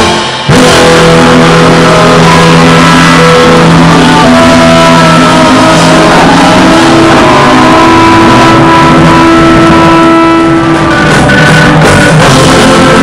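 Live rock band playing loudly, with electric guitar and drums and long held notes. Loudness dips briefly just after the start.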